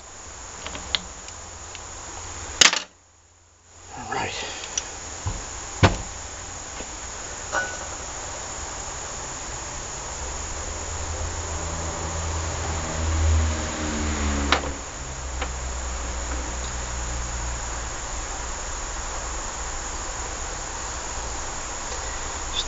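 Small metal pump parts handled on a workbench: a few sharp clicks and taps over a steady high hiss, with a brief dropout just before three seconds in and a low hum swelling around the middle.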